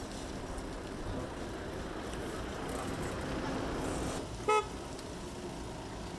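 Outdoor street ambience with a steady low background hum, broken by one short vehicle horn beep about four and a half seconds in.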